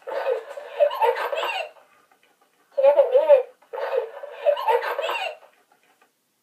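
Talking toy toucan repeating laughter back in its high-pitched voice, in two stretches: one in the first couple of seconds and a second, similar one from about three seconds in until near the end.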